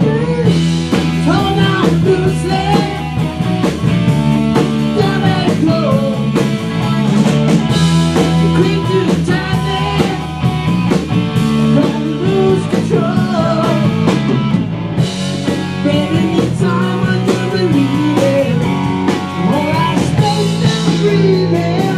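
Live rock band playing loudly, with electric guitars, bass and drums.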